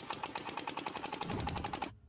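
Cartoon engine sound effect for a smoke-belching flying ship: a rapid, even putt-putt of sharp pops, about a dozen a second, that cuts off just before the end.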